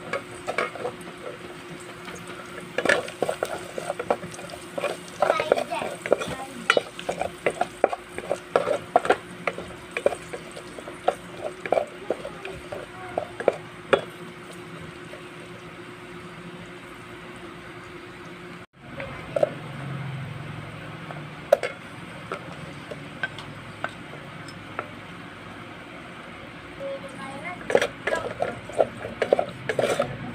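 A wooden spoon stirring garlic frying in oil in a metal pot: quick light knocks and scrapes of the spoon against the pot over a steady low sizzle. The knocking thins out after a cut about two-thirds of the way in, then picks up again near the end.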